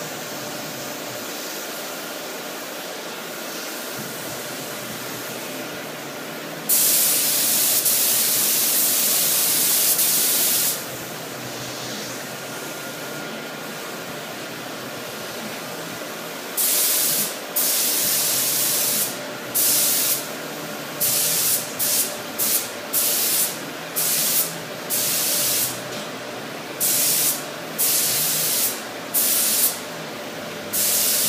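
Gravity-feed paint spray gun hissing as compressed air sprays primer. One long pull of about four seconds comes first, then a run of short bursts of a second or less each. A steady fan hum runs underneath.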